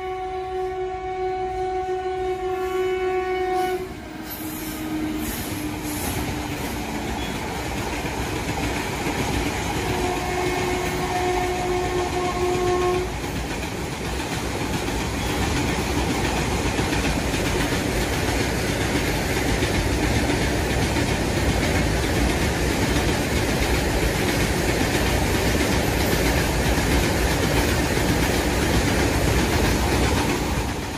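Recorded train sound: a train running with a continuous rumble. Its horn gives one long blast that ends about four seconds in, dropping slightly in pitch as it fades, and a second blast of about three seconds comes about ten seconds in.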